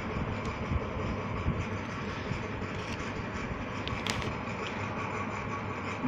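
Steady low background noise, with a brief paper rustle about four seconds in as a page of a printed book is turned.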